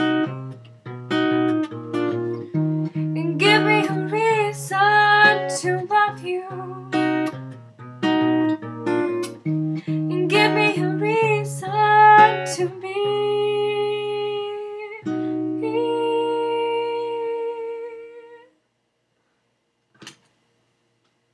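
Acoustic guitar played with a woman singing over it. Near the end she lets the last chords ring out, and they stop about 18 seconds in.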